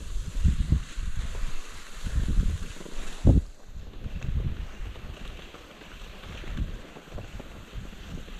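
Wind buffeting the microphone in irregular low gusts while cross-country skis glide over packed snow downhill, with a faint sliding hiss. There is one louder thump about three seconds in.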